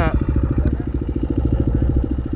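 Dirt bike engine idling with a steady, rapid, even beat.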